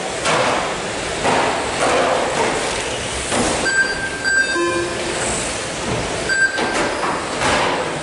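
Electric 1/12-scale GT12 pan cars whirring past one after another on a carpet track, their motor and tyre noise swelling and fading about once a second. Short high electronic beeps sound a few times in the middle.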